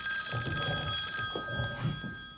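Telephone ringing: one long, steady high-pitched ring. Under it come low thumps and rustling as someone gets up from a wooden chair.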